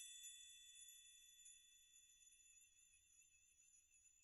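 The faint tail of a chime-like musical sting: several high ringing tones held together and slowly fading toward silence.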